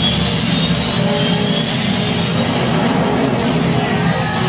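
3D film soundtrack over theatre speakers: a slowly rising whooshing whine over a low rumble, with music underneath, fading about three and a half seconds in.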